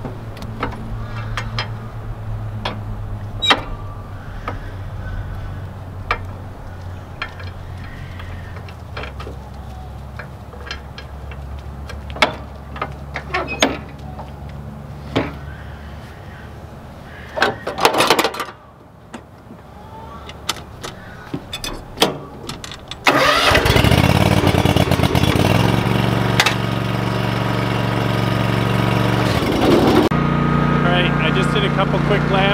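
Ferris zero-turn mower engine: a low hum with scattered clicks stops about 18 seconds in, and after a few quieter seconds the engine starts suddenly and runs loud and steady, its pitch stepping a few seconds later.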